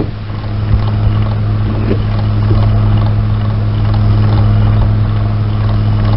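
A steady rushing noise over a constant low electrical hum on an old home tape recording, with a few faint knocks.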